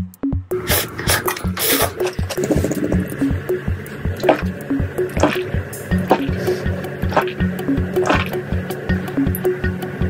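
Background music with a steady, repeating beat, over scattered liquid sounds from drinking out of a glass novelty vessel.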